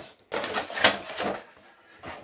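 Cardboard product box being opened and its contents slid out onto a table: a rustling, scraping sound lasting about a second, then fading.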